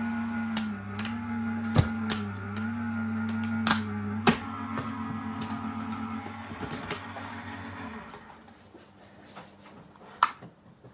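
Gemini Junior electronic die-cutting machine running, its motor humming steadily as it rolls the cutting plates through, with a few sharp clicks. The hum shifts up in pitch about four seconds in and stops about eight seconds in as the pass ends.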